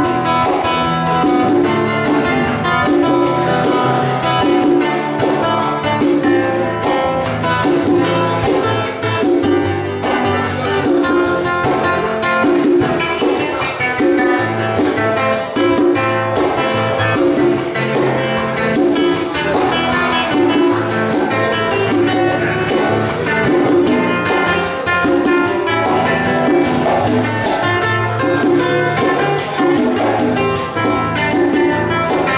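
Live instrumental Latin-jazz duo: an acoustic-electric guitar plays the tune over a pair of congas. A fast, even ticking pulse runs on top, and a low drum pattern repeats about once a second.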